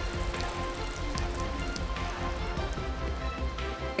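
A thin stream of mineral water pouring from a metal spout into a stone basin, splashing and trickling, with background music over it.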